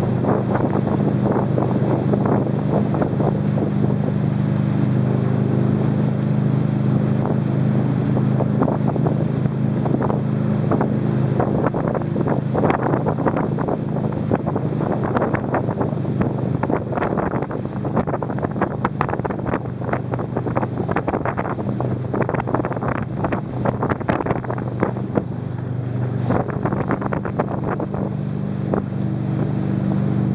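Tow boat's engine running steadily under way, a continuous low drone, with wind buffeting the microphone and rushing water; the gusts come thicker through the middle and latter part.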